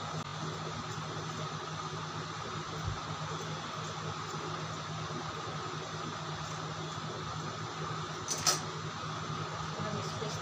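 Steady mechanical hum of a running fan-like appliance in a small room. About eight and a half seconds in comes one short, sharp metallic click, which fits the steel scissors being set down on the concrete floor.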